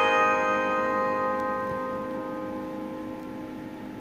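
The last strummed guitar chord of the song ringing out and slowly fading away.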